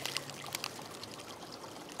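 Small creek running: a faint, steady trickle of flowing water, with a couple of light ticks in the first second.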